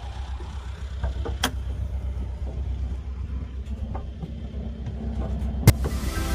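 Engine running with a steady low rumble that grows slightly louder towards the end, with a few sharp clicks, the loudest just before the end.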